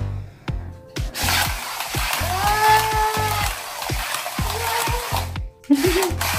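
Small battery-powered RC toy car running through clear plastic tubes: a rattling whir from about a second in until shortly before the end. It plays over background music with a steady beat.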